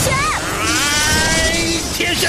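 A voice calls out briefly, then an animated power-up sound effect: several tones climb steadily together over a bright hiss, the charge building for a lightning attack.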